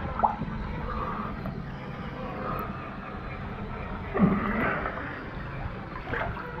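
Water sloshing and gurgling around a swimmer's head at the surface, picked up close by a head-mounted camera at the waterline.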